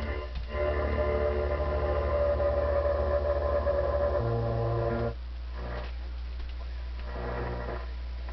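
Music from a radio broadcast, heard through a 1930s Western Electric 10A receiver, with a steady mains hum underneath that the owner puts down to bad capacitors still in the set. About five seconds in the music drops out as the tuning dial is turned off the station, leaving the hum and faint traces of signal.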